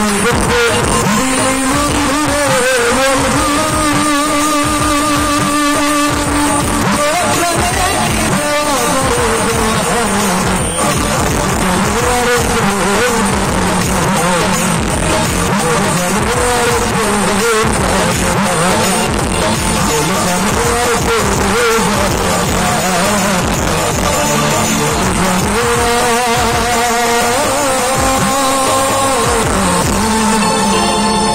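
A man singing into a handheld microphone, his voice loud and amplified through a PA, with long held, wavering notes that rise and fall in a melody.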